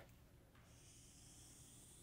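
Near silence: faint room tone, with a soft, high dry-erase marker hiss on a whiteboard that starts after about half a second and stops near the end.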